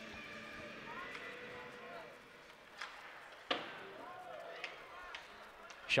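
Faint ice-hockey arena sound: a low murmur of distant voices with a few sharp clacks of sticks and puck on the ice, the loudest about three and a half seconds in.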